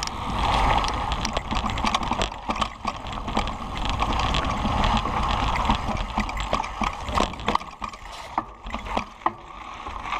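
Kona Process 134 mountain bike riding a dirt singletrack: a rushing noise of tyres rolling over dirt and rocks, full of rapid clicks and rattles from the chain and frame. It eases briefly near the end.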